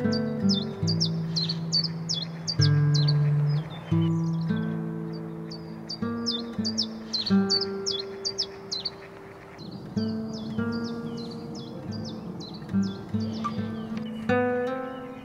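Plucked acoustic-guitar music with a songbird singing over it: quick, high, downward-slurred chirps in three runs, with short pauses about three and nine seconds in.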